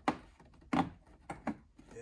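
Plastic wheel-well fender liner being bent and pushed inward by hand, giving several irregular knocks and crinkles as it flexes against the wheel well.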